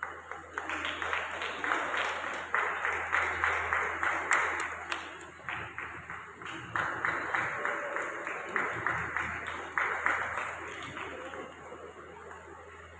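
Audience applauding, a dense patter of many hands clapping that eases briefly about halfway through and then picks up again.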